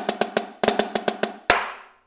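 Marching snare drum played with sticks: quick accented clusters of flammed five-stroke rolls, then about a second and a half in a single loud accented rim shot that rings out.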